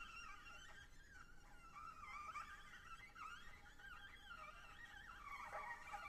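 Very faint, high whistling tones from a shell horn blown softly, the pitch wavering up and down.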